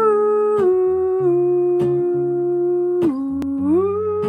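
Acoustic guitar picked in a slow chord pattern, with a voice humming a held melody over it. The hummed line slides smoothly between notes, dipping low about three seconds in and rising back up near the end.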